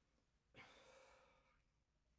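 Near silence, broken by one faint exhale or sigh starting about half a second in and lasting about a second.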